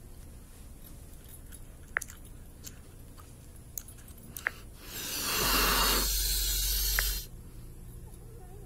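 A few sharp clicks, then about two and a half seconds of loud, steady rain-like hiss with a low rumble underneath that starts and stops abruptly: the sound effect of the animated rain-cloud hologram as it is tapped.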